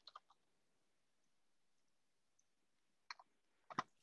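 Near silence, with a few faint short clicks about three seconds in and just before the end.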